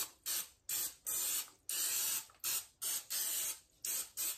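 Aerosol canola oil cooking spray hissing in a run of short bursts, about two a second, some longer than others.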